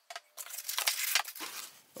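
Packaging being handled: a couple of light clicks, then about a second of rustling and scraping with small ticks as the foam insert is pulled out of the cardboard box, which stops shortly before the end.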